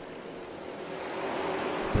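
A pack of racing go-karts' small engines running at speed, heard as a steady mechanical drone that grows slowly louder.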